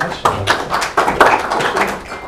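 Audience applause: a short round of many hands clapping, dying away at the end.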